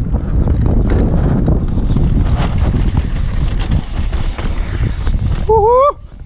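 Wind buffeting an action camera's microphone over the rumble and rattle of a mountain bike's tyres and frame running fast over a rough dirt trail, with many small knocks. A short rising pitched sound cuts in near the end.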